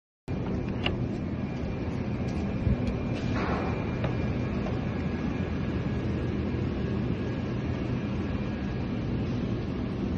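Steady low vehicle rumble with a few faint steady tones above it, broken by a couple of brief clicks and a short hiss about three and a half seconds in.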